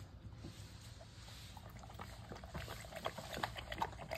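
Dog lapping water from a splash-proof bowl with a floating disc. Quiet at first, then from about halfway through a quickening run of soft, wet laps.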